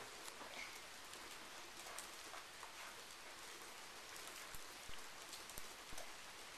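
Faint, scattered light taps and clicks of a toddler eating with her fingers from a plastic plate, as her hands and food touch the plate, over a steady hiss.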